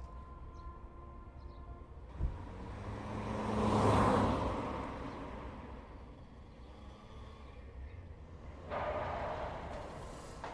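Car sounds from a film-style scene: a single knock about two seconds in, then a car's noise swelling to its loudest around four seconds and fading away, with a shorter rush of noise near the end.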